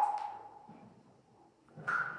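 Cave stalactites struck to make them ring, each strike a sharp tap followed by a clear, bell-like tone. A lower tone fades away over the first second, then a higher one is struck near the end.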